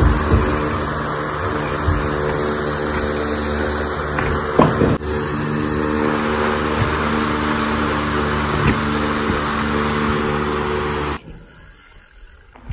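A motor running steadily at one speed, an even droning hum that stops suddenly near the end.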